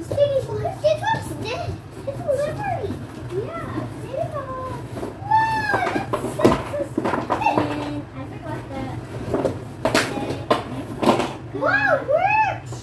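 Young children's high-pitched voices, chattering and calling out in short rising-and-falling cries as they play. A few sharp knocks come around the middle and again later, over a steady low hum.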